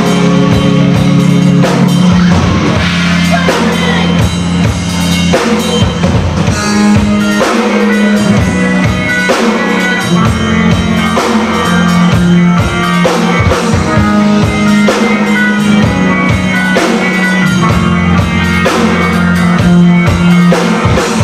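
Live rock band playing: electric guitars, bass guitar and drum kit, with steady sustained bass notes under regular drum hits. It is heard through a camcorder's built-in microphone.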